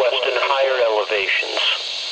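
Speech only: the automated synthesized voice of a NOAA Weather Radio broadcast reading the forecast through a weather radio's small speaker, pausing briefly near the end.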